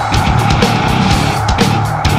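Nu metal band playing an instrumental passage: heavily distorted electric guitars over a steady pattern of drum hits.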